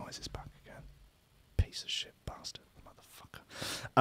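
A man whispering under his breath close to the microphone, with a few soft clicks and taps in between.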